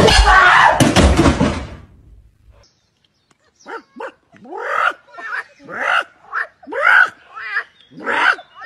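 A metal pot hit hard: a loud crash at the start and a second hit just under a second later, with noise that dies away over about two seconds over a low steady hum. After a short silence, a run of short rising vocal calls, repeated about one and a half times a second.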